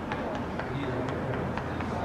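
Field sound of a soccer match: players' voices calling across the pitch over a steady low rumble, with scattered light taps of footsteps.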